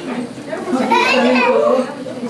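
Children's voices talking over one another, starting about half a second in.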